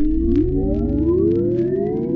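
Electronic music: many overlapping synthesizer tones sliding in pitch, most of them rising, layered over a low drone, with faint ticks scattered through.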